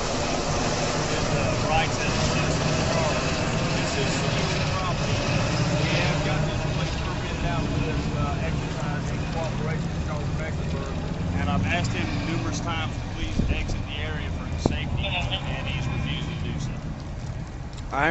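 A steady low engine drone, with indistinct voices talking faintly underneath it.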